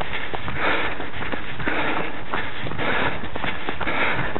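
A runner's hard, rhythmic breathing close to the microphone, about two breaths a second, with his footfalls on an earth path ticking underneath.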